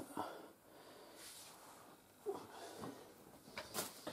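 Quiet room with a person's faint murmurs and breaths, a few soft sounds spread across it and a slightly louder one near the end.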